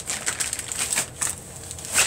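Plastic packaging crinkling and rustling as it is handled and opened, an irregular run of crackles that thins out after about a second.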